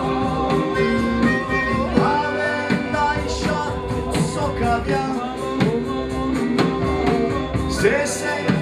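A folk band playing live: sustained button accordion chords and a strummed small four-string guitar over steady strokes on a large bass drum and a hand-held frame drum, with voices singing.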